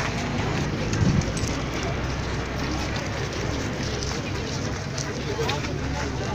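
Indistinct voices of people talking outdoors over a steady low background noise, with a brief louder low thump about a second in.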